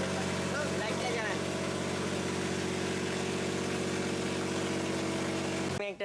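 An engine running steadily at one speed, a constant hum that cuts off abruptly near the end.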